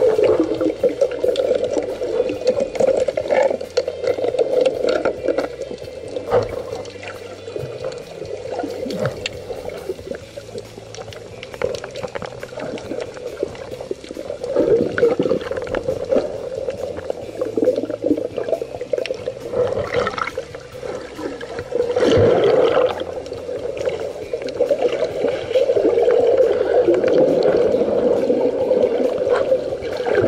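Seawater heard through an underwater camera: a muffled rushing drone with scattered small clicks and bubbling, swelling louder a few times.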